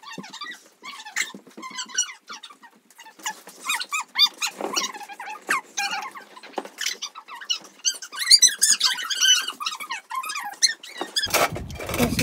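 Young children squealing and laughing in play: many short high-pitched squeals that rise and fall, with no clear words.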